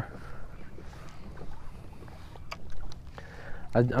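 Low wind and water noise around a fishing kayak, with a few faint clicks about halfway through.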